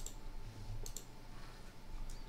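Computer mouse clicking: one click at the start, then two quick clicks just under a second in.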